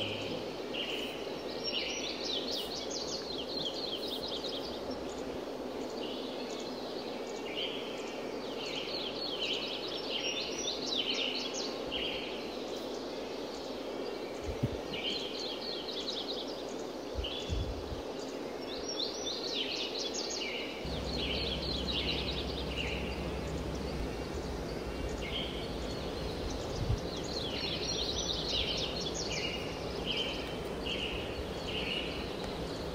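Birdsong over a steady outdoor background hiss. A songbird sings a phrase of quick high notes every eight or nine seconds, with shorter chirps between. A faint low rumble joins about two-thirds of the way through.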